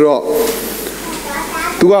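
A man's long, breathy hiss of about a second and a half between spoken phrases, with speech picking up again near the end.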